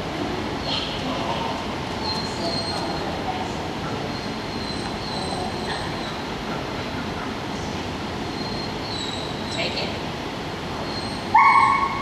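Steady noise of a large hall with faint high squeaks through it; near the end a dog gives a sudden loud bark.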